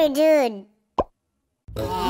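A squeaky cartoon voice, without words, slides down in pitch and fades out. About a second in comes a single short cartoon "plop" sound effect. Near the end, cartoon voices and music start up again.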